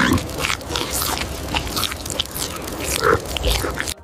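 Chimpanzees eating: a rapid, irregular run of chewing and crunching sounds as they bite and tear at food.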